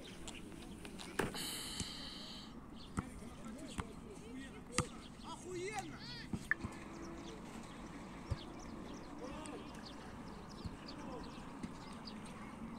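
Faint voices of people some way off on a sandy beach, with scattered light knocks and clicks close by and a brief high hiss a little over a second in.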